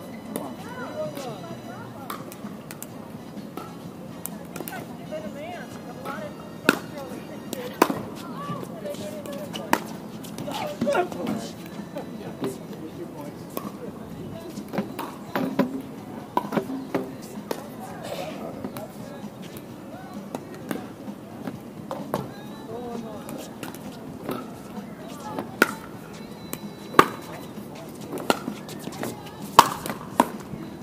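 Sharp pops of pickleball paddles hitting a plastic ball, scattered irregularly a second or two apart and loudest near the end, with people's voices murmuring underneath.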